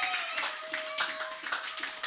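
Congregation applauding, many hands clapping irregularly and slowly dying down, with a steady held tone sounding behind it.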